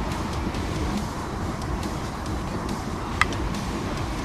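Steady rushing outdoor noise of wind buffeting the camera microphone and the flowing river rapids, with one sharp click a little after three seconds in.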